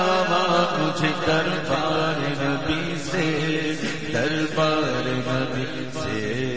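Naat recitation: a voice singing a long, wavering melodic line over a steady hummed vocal drone.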